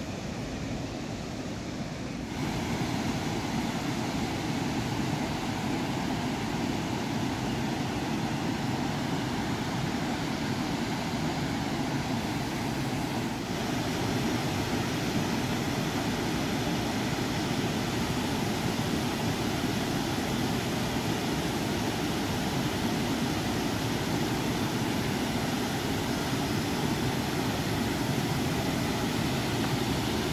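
Steady rush of water from a small creek waterfall and its rapids, stepping up louder about two seconds in.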